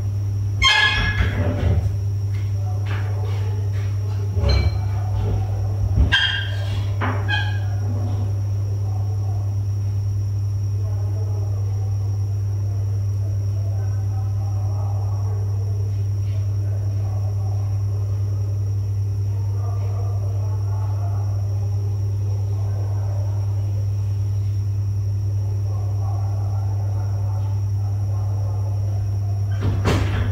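A steady low hum at an even level, with several sharp clicks and knocks in the first few seconds and a faint irregular murmur later on.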